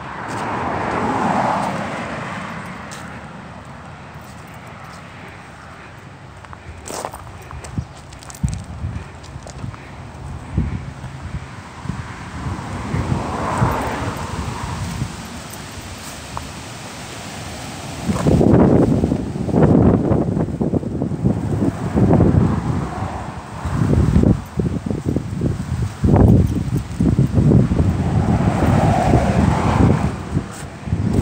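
Cars passing on the adjacent road, each a rush that swells and fades, three times. In the second half, loud irregular gusts of wind buffet the phone's microphone.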